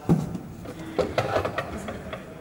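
Knocks and light clatter of percussion gear being handled. The sharpest knocks come just after the start and about a second in.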